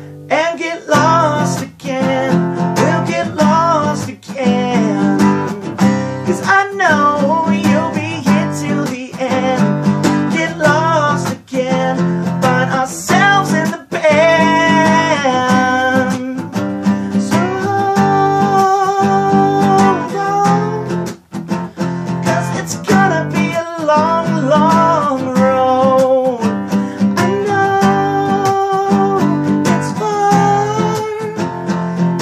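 Steel-string acoustic guitar strummed steadily, with a man singing over it and holding some long notes.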